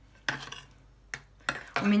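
Metal spoon stirring sour cream and mayonnaise in a ceramic bowl, with a few short scrapes and clinks of the spoon against the bowl.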